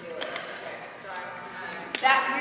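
Faint, indistinct talking, with a few short sharp clicks, one of them just before the end.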